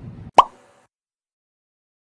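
A single short, loud pop sound effect with a quick upward blip in pitch, followed by silence.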